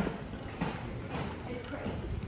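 Footsteps of a group walking, about two steps a second, over the indistinct chatter of people around them.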